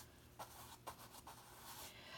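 Faint strokes of a paintbrush spreading paint across a canvas, barely above the room's low hum.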